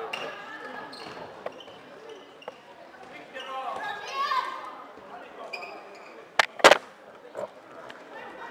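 Indoor floorball game: players' calls and the clicks of sticks and ball on the court, with two loud sharp knocks close together about six and a half seconds in.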